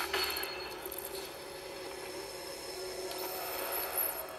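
A movie trailer's soundtrack playing through a TV: a steady low drone with an even hiss over it and no voice.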